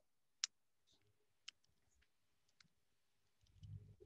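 Near silence broken by a few faint, isolated computer keyboard clicks.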